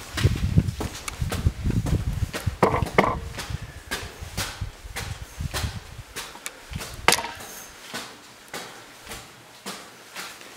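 Footsteps climbing a metal staircase, a run of knocks and clanks from the treads that grow fainter and more spaced out in the second half.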